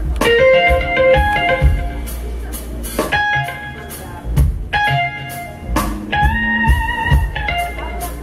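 Live blues band playing an instrumental passage: short melodic lead phrases with some wavering held notes over drums and a low bass line.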